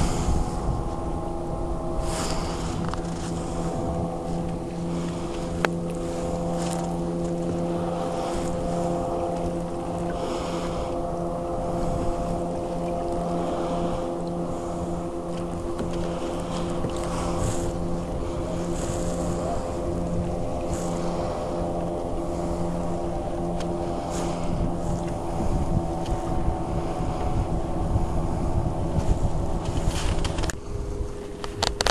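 A steady engine drone holding an even pitch, under low wind rumble on the microphone, with light splashes from kayak paddle strokes every couple of seconds. The drone fades in the last few seconds.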